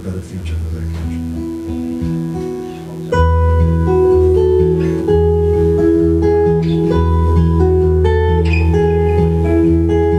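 Solo cutaway acoustic guitar, fingerpicked, with single notes ringing over low bass notes. It plays softly at first and gets suddenly louder about three seconds in.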